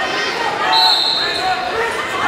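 Several voices of spectators and coaches shouting at once, echoing in a large gymnasium, with a brief high steady tone about a second in.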